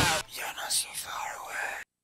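Rock music cuts off about a quarter second in, followed by a short whispered voice that stops abruptly near the end.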